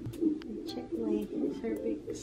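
Indistinct, low human voice murmuring in short broken phrases, with no clear words.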